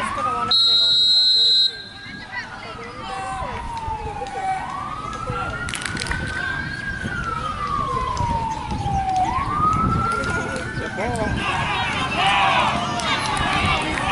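A referee's whistle blown once, loud and shrill, for about a second near the start, followed by an emergency-vehicle siren wailing in the background, slowly rising and falling three times. Voices rise faintly near the end.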